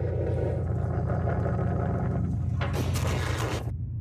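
Mortar shell exploding in open ground: one loud blast about three seconds in, over a steady low drone. The blast is cut off short just before four seconds.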